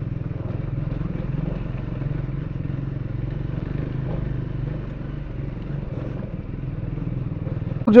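Triumph motorcycle engine running steadily while the bike rides a rough gravel track, a low, even drone with fast fine pulsing.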